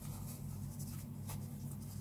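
Faint rustling and scraping of a crochet hook drawing thick T-shirt yarn through stitches, a few soft strokes, over a steady low hum.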